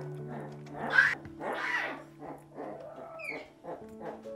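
Young tiger cub giving a few short cries while being bottle-fed, the loudest about a second in, over soft background music.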